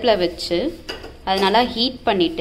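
A person's voice speaking in two short stretches, with a pause in the middle.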